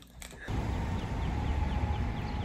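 Outdoor ambience that starts about half a second in: a steady low rumble of wind or traffic, with a small bird chirping over it in a quick run of short, high, falling notes.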